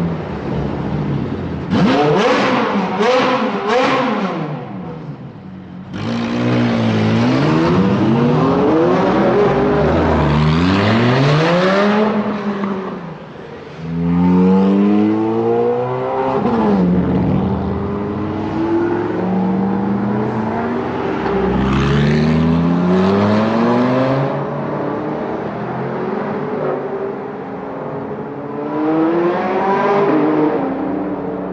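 Ferrari 430 Scuderia's V8 engine being driven hard, revs climbing and then dropping back again and again as it pulls through the gears. A few sharp cracks come near the start.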